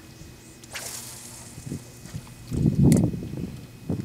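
A cast with a spinning rod: a swish about a second in as the rod whips through the air and the line pays out. Near three seconds there is a louder knock followed by a sharp click.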